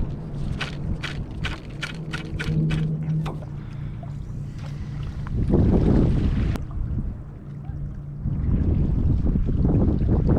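Wind buffeting the microphone in loud low gusts, about halfway through and again near the end. In the first few seconds there is a quick run of light clicks, about three a second, over a steady low hum.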